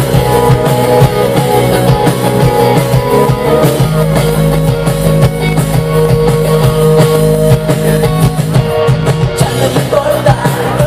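Live indie rock band playing an instrumental passage: electric guitars, bass and drum kit.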